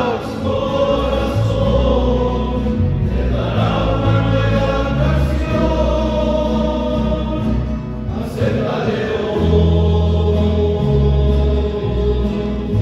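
Men's choir singing a hymn together, over sustained low bass notes that change pitch every second or so. The voices break briefly between phrases, about three and eight seconds in.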